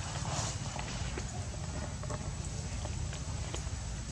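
Outdoor background noise: a steady low rumble with a short rustle about a third of a second in and a few scattered light clicks.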